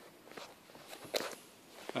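A few faint knocks and rustles from someone moving about and handling the camera.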